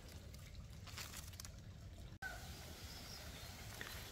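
Quiet outdoor background with faint rustling and handling noises from the leaves and twine as a mai tree branch is pulled down and tied to a bamboo stake.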